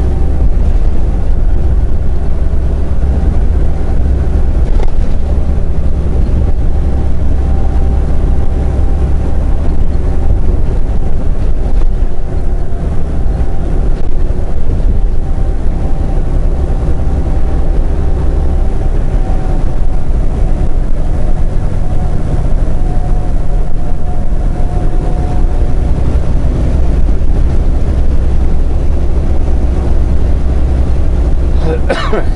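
Semi truck's diesel engine and road noise heard inside the cab while cruising on a highway: a loud, steady low drone with a faint steady whine above it.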